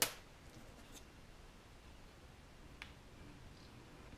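One sharp click right at the start, then a few faint ticks from small hand work at a workbench, over quiet room tone.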